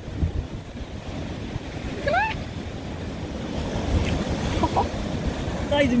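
Sea surf breaking on a rocky shore, a steady rumbling wash of waves with wind buffeting the microphone. A short rising voice sound cuts in about two seconds in, and voices come in near the end.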